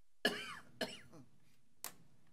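A person coughing three times, the first cough the loudest and longest and the last one short.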